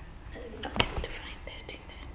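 Low whispered talk with a few light clicks and rustles of paper being handled close to a microphone.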